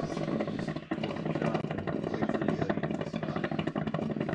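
Drip coffee maker brewing, its water heater gurgling and sputtering in a steady, dense crackle with a low hum underneath.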